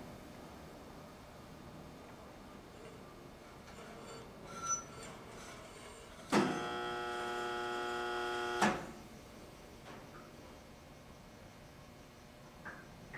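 A low steady background hum; about six seconds in, a louder steady electric buzz switches on with a click and cuts off just as suddenly some two and a half seconds later.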